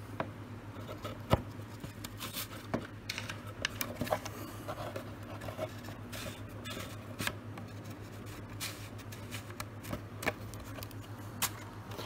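Scattered small clicks and scrapes of hinges being handled and pushed into slots along a model aircraft's control surface, over a steady low hum.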